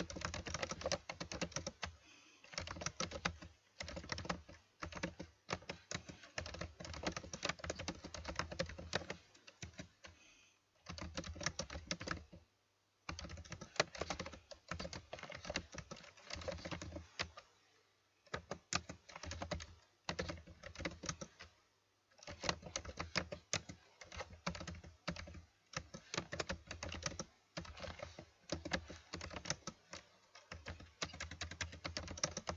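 Typing on a computer keyboard: rapid runs of keystrokes that break off for about a second every few seconds.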